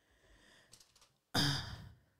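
A person's short sigh, breathed out into a close studio microphone about a second and a half in.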